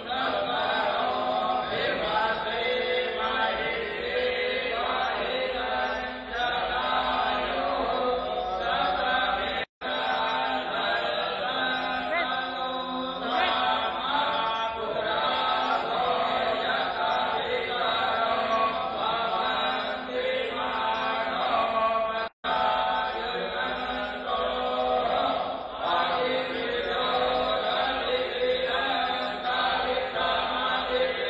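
A man chanting Hindu mantras into a handheld microphone in a steady, continuous recitation. The sound cuts out completely twice for a moment, about ten seconds in and again about twenty-two seconds in.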